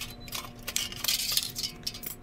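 Thin aluminium foil from a baking pan crinkling and crackling as it is handled and trimmed with scissors, in irregular short crackles.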